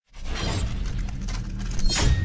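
An edited-in sound effect of dense crackling and breaking noise, thick with short clicks over a deep bass rumble, starting abruptly out of silence.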